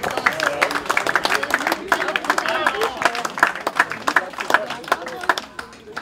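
Spectators clapping in scattered, uneven claps, with several people talking among them.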